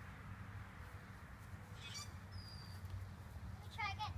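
Faint outdoor background with a steady low rumble, a few short high bird chirps, and a brief click about two seconds in.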